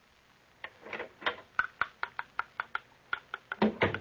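Radio sound effect of a silversmith's small hammer tapping metal: quick, regular light taps, about five a second, some with a faint ring, starting about half a second in, with a louder knock near the end.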